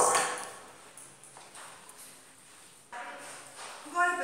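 Stainless steel mixing bowl set down on a stone countertop, a sharp clank with a metallic ring that fades over about a second. Near the end, a spoon scraping and stirring a potato and cabbage mixture in a plastic bowl.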